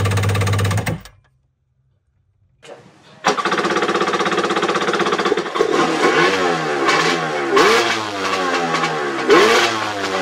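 Yamaha two-stroke jet ski engine running steadily, then cutting out about a second in; after a gap of about two seconds it runs again. From about five seconds in the throttle is blipped several times, the revs rising and falling.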